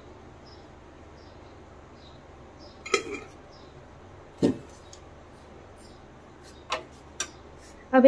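Quiet steady background hum broken by a few brief knocks and clicks of kitchenware being handled, a glass jar and a kadhai, as cooking oil is poured into the pan.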